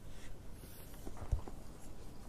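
Faint chewing and small wet mouth clicks as a person eats a piece of raw blue runner nigiri, with a soft low thump a little past halfway.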